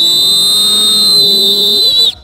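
Whistle blown in one long, steady, high-pitched blast, the signal for the kicker to take his shot; it cuts off near the end.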